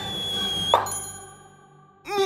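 Coin-toss sound effect: a slowly rising tone as the coin spins, cut off about three-quarters of a second in by a sharp metallic click with a high ringing ding that fades away.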